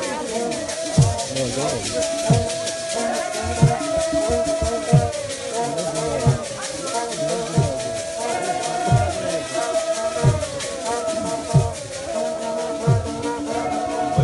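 A group of women singing a hymn together in chorus, with a deep drum struck about once every second and a bit, and steady rattling throughout.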